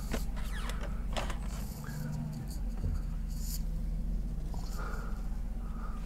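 Mercedes-Benz R129 500SL's V8 engine idling steadily, heard from inside the cabin, with a few faint clicks.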